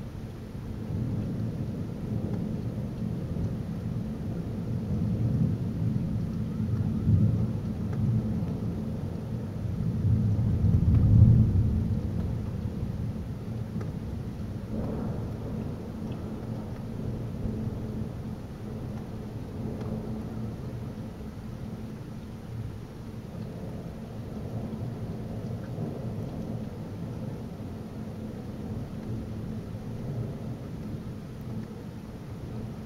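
Rolling thunder from a supercell, a long low rumble that swells to its loudest about eleven seconds in and then dies down to a lighter rumble, over steady rain.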